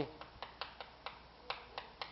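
Chalk writing on a chalkboard: a string of short, sharp, irregular taps and clicks as the chalk strokes hit the board.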